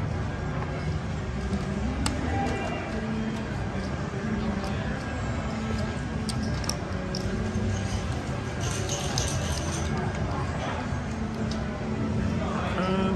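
Casino floor ambience: indistinct background voices and music over a steady hum, with a few sharp clicks at the table.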